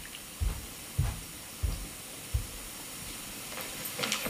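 Steady hiss of recording background noise in a quiet room, broken by four soft, low thumps in the first half, about two every second and a bit.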